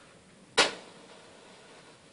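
A single sharp bang about half a second in, fading quickly, over faint room noise.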